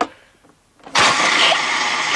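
A home-made fake cannon firing: a sudden loud hissing blast about a second in, lasting about a second and a half.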